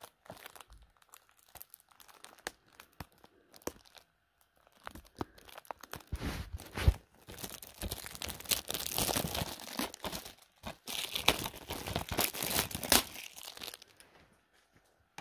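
Packaging being handled close to the microphone: irregular crinkling and rustling with many small clicks, faint at first and much louder from about six seconds in until near the end.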